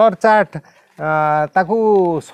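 Speech only: a man talking, with a brief pause in the middle.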